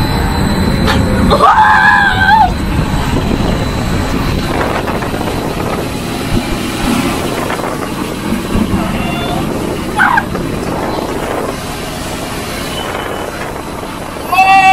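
Hurricane simulator's wind blasting over the microphone, a loud steady rush as the wind speed climbs. A person shouts about two seconds in and again briefly around ten seconds.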